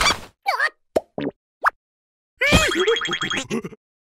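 Cartoon larva character squeaks and short comic sound effects: a few quick pops, clicks and rising chirps in the first two seconds, then, about two and a half seconds in, a longer stretch of squeaky babbling voice over a fast rattle.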